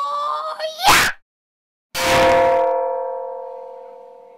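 Logo sting sound effects: a slowly rising whistle-like tone that ends in a short, loud whoosh about a second in, then after a brief silence a single bell-like ding about two seconds in that rings on and slowly fades.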